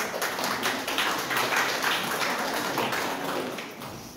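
Audience applauding: many hands clapping in a dense patter that fades away near the end.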